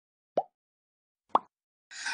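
Two short pop sound effects about a second apart, the click sounds of an animated subscribe-button overlay.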